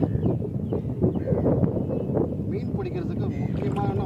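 Wind rumbling on the microphone, with indistinct voices talking.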